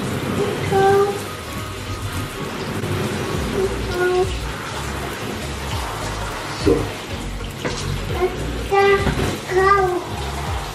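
Handheld shower head spraying water steadily onto a small dog's wet coat in a bathtub. A few short pitched, voice-like sounds rise over the spray about a second in, around four seconds, and near the end.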